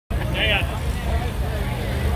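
Low steady rumble of a locomotive at rest, under crowd voices, with a brief high squeal about half a second in.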